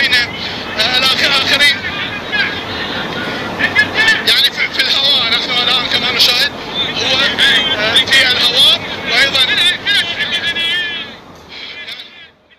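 A crowd of people shouting and calling out, many raised voices overlapping. It fades near the end.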